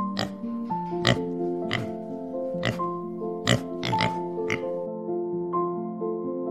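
Domestic pigs grunting in short, irregularly spaced bursts, about seven of them, over background music of sustained chords.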